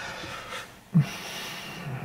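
A man's breathing and a short low voice sound, a hesitation noise, in a pause between sentences; faint breathy noise with one brief voiced sound about a second in.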